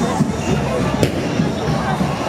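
Street carnival parade: crowd voices and music from the procession mixed together, with one sharp crack about a second in.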